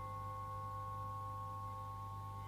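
Sustained experimental drone: several steady high tones held together over a steady low hum, with no strikes or attacks.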